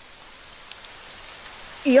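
Steady rain falling, an even soft hiss with no breaks.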